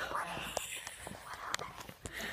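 Hushed whispered speech close to the microphone, with a few small clicks of handling.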